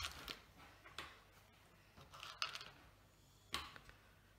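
Faint handling sounds of sweets being picked up and pressed onto a gingerbread house: a few short clicks and rustles spread out, one about a second in, a small cluster a little past halfway and one shortly before the end.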